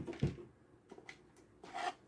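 Quiet handling noise: a light click about a second in, then a short rub near the end as the plastic solar charge controller is picked up off a cutting mat.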